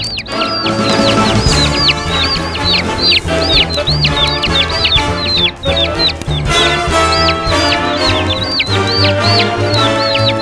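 Cartoon background music with a bassline, under a continuous stream of high, quick cartoon bird peeps, several a second.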